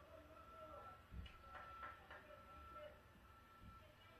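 Backup alarm of a reversing bus beeping faintly in an even, repeating rhythm.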